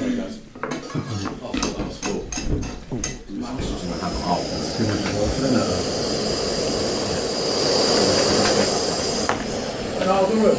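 Backpacking gas stove burner running at a steady rushing hiss under a pot, after a few clinks of pots and cutlery and brief voices.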